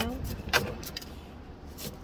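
Handling noise from potting a succulent: a single sharp click about half a second in, with a fainter one near the end, over a steady low background rumble.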